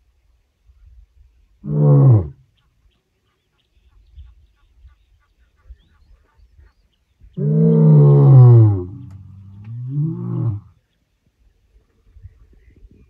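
Male lion roaring: a short call falling in pitch about two seconds in, then a long, loud roar falling in pitch from about seven and a half seconds, trailing into a softer call that rises and falls.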